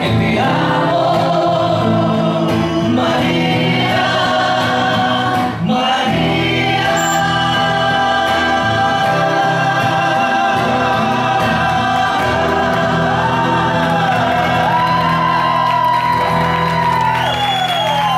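Two men singing a song together into microphones over backing music, amplified through a bar's PA.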